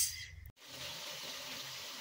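Boiled potato slices deep-frying in a pan of oil: a steady sizzle that starts about half a second in.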